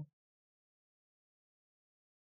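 Near silence: the sound track is all but empty, with only the tail of a spoken word at the very start.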